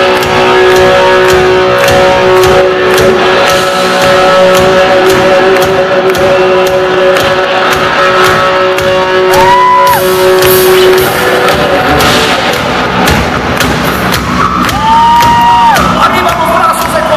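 A heavy metal band playing loud and live: distorted electric guitars, bass guitar and drums. About halfway through and again near the end, a high note rises in, is held, and bends.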